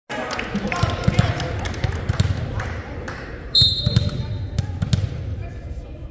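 Volleyball being bounced on a hardwood gym floor, with voices carrying in a large echoing gym. A referee's whistle is blown once, briefly, about three and a half seconds in, the signal for the serve.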